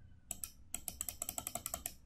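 Faint, rapid clicking of a computer mouse button, a couple of clicks and then a fast even run of about ten a second, as the indentation value is stepped up with the dialog's spinner arrows.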